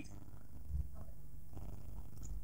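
Faint, steady low rumble of background noise with no speech over it.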